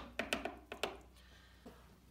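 A small aquarium hand net knocking lightly against a plastic tub as a scoop of salmon fry is tipped out: a quick run of sharp taps and clicks in the first second, then quieter, with one faint tap near the end.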